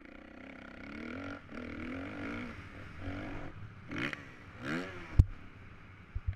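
Dirt bike engine revving up and down repeatedly as the throttle is worked, heard from a helmet-mounted camera. A single sharp knock about five seconds in is the loudest sound.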